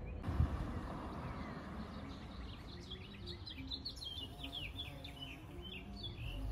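Songbirds chirping in quick runs of short, falling notes, starting about halfway in, over a low steady outdoor rumble.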